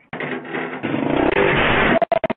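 Dirt bike engine revving hard at high throttle. It starts abruptly just after the start and runs loud, with a brief dip about a second in.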